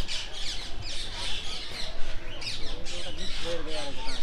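A crowd of parakeets screeching: many harsh, short, downward-sliding calls overlapping one another several times a second without a break.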